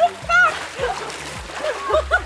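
Water splashing as people wade through a waist-deep river, over voices and background music with a beat.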